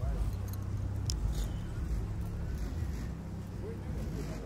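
Faint, indistinct voices of people talking over a low, steady rumble.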